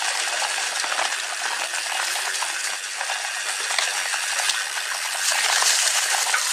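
Mountain bike tyres rolling fast over a dry, leaf-covered forest dirt trail: a steady crackling hiss thick with small clicks and rattles, a little louder near the end.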